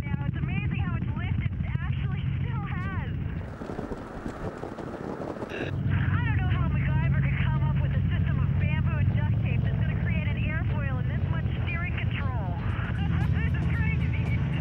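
Muffled talking over the steady low drone of an open ultralight aircraft in flight.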